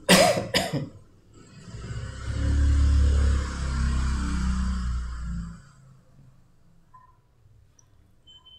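A person coughs twice, sharply, right at the start. Then comes about four seconds of low rumble under a hiss, which fades out around the middle.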